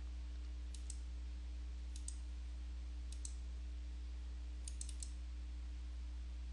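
Computer mouse button clicks in four short clusters of two or three quick clicks, spread about a second apart, over a steady low electrical hum.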